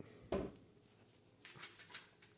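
Faint handling sounds as the rolled-up salami and cheese is lifted out of a plastic bowl and the phone is moved: a short knock about a third of a second in, then soft rustling and small clicks near the end.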